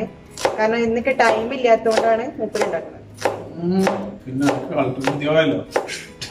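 A kitchen knife chopping on a cutting board in irregular strokes, about a dozen in six seconds, with a woman talking over them.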